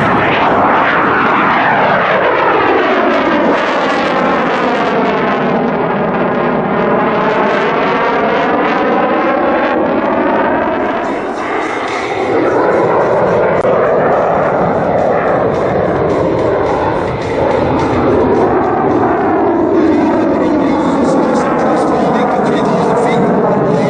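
CF-188 Hornet's twin General Electric F404 turbofans running in afterburner as the jet climbs away. The sound is loud and continuous, with a phasing whoosh that sweeps down and back up in pitch over the first ten seconds. It dips briefly about twelve seconds in and then turns to a deeper, steadier rumble.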